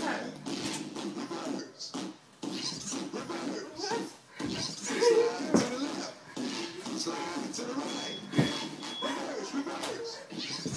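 People's voices talking in a small room, with several sharp thumps mixed in.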